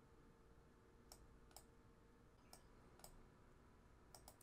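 Near silence, broken by four faint, short clicks in two pairs, the clicks of each pair about half a second apart.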